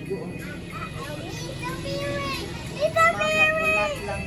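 Young children's voices heard over a video call, vocalising in long drawn-out, sung notes rather than words, loudest about three seconds in.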